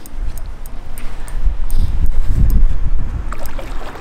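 Wind rumbling on the microphone, loudest around the middle, mixed with water splashing as a large hooked pike thrashes at the surface close to the bank.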